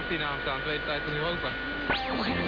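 Medium-wave AM broadcast heard through a simple two-transistor audion (regenerative) receiver: a station's voice in the noise, with a steady whistle underneath that stops about three-quarters of the way in. Near the end a whistle swoops down and back up, the heterodyne of a carrier as the tuning passes over another station.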